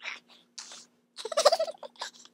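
A person's voice making a silly noise: a few short breathy sounds, then a loud, strained, warbling vocal noise a little past the middle that lasts about half a second.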